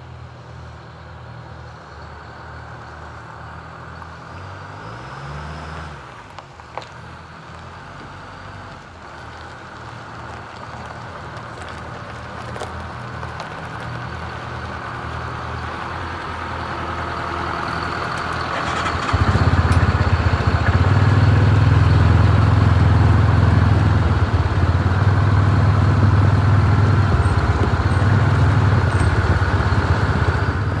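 MCI coach's diesel engine running as the bus moves slowly along the drive, growing gradually louder. About two-thirds of the way through the rumble becomes suddenly much louder and heavier as the bus is close by.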